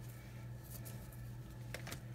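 Faint handling of craft supplies on a tabletop: a few light clicks in the middle and near the end, over a steady low hum.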